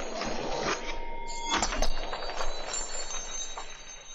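Logo sting sound effect: a sudden rushing swell with a held ringing tone, changing character about a second in, peaking in a sharp hit near two seconds, then fading away toward the end.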